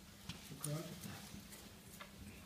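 Faint, indistinct murmured voice in a hall, with a few light clicks and knocks.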